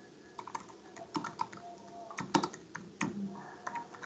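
Typing on a computer keyboard: a quick, irregular run of keystroke clicks as a sentence is typed out.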